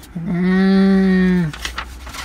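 A woman's voice holding one long, low sung note for about a second and a half at the end of a sung phrase, then breaking off; faint paper rustling from notebook pages follows.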